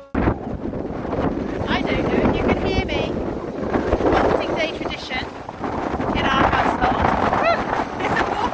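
Strong wind buffeting the microphone, a dense, heavy noise with a deep rumble. Voices are heard through it now and then.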